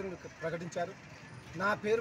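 A man speaking Telugu into a microphone in short phrases, with a brief pause in the middle.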